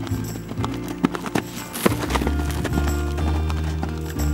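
Hoofbeats of a horse cantering on a sand arena, a run of knocks in the first half, over background music.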